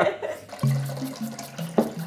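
Water being poured from a plastic pitcher into a glass measuring jug: a steady, splashy pour.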